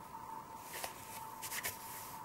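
Hands working oil pastel on paper, soft rubbing and scraping with a few light clicks as the pastel sticks are handled. A faint steady whine runs underneath.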